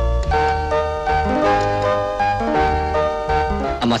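Background film score: a melody of held notes stepping from one pitch to the next over a steady bass line.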